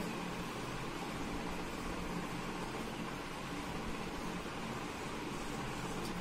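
Steady background hiss with a faint low hum, even throughout, with no distinct sound events.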